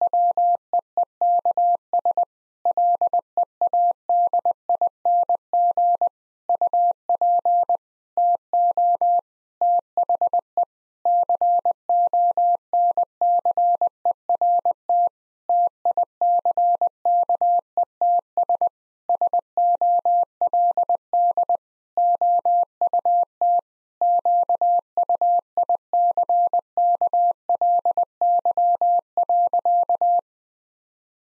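Morse code practice tone, a single steady pitch keyed on and off in dots and dashes at 20 words per minute, spelling out the sentence "In the weeks leading up to the concert tickets sold out quickly". It stops just before the end.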